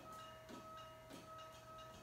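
Near silence: room tone with a faint steady high-pitched hum and a few soft clicks.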